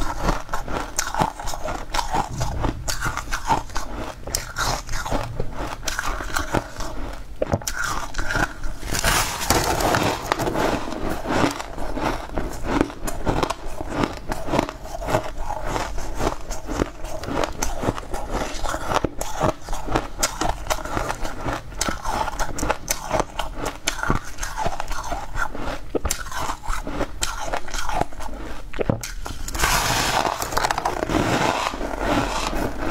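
Close-up crunching and chewing of crumbly green frozen ice: crisp bites and crackles that run on without a break.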